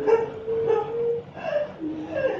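A high, wavering voice held in long notes that slide and break every half second or so.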